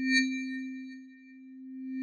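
Electronic chime sound effect for a title card: a steady low hum with a soft bell-like ring struck just after the start, fading, then swelling again near the end.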